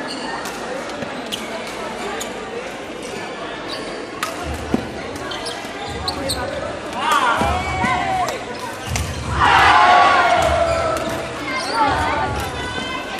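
Badminton rally: sharp racket strikes on the shuttlecock, with shoes squealing on the court floor in two bursts, the louder one a little before the end.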